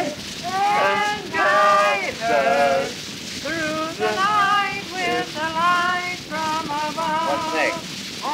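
People singing a song together on a 1942 home-cut Wilcox-Gay Recordio acetate disc, in held, melodic notes. A steady crackle and hiss of surface noise from the damaged disc runs under the voices.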